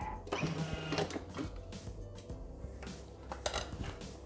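Bimby (Thermomix) food processor's lid being unlocked and lifted off, with a brief mechanical whir early on and clicks and a knock as the lid is handled and set down, over soft background music.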